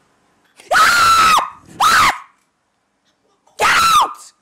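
A woman screaming three times: a long scream, a short one, then another near the end. Each starts with a sharp rise in pitch, holds high and drops away at the end.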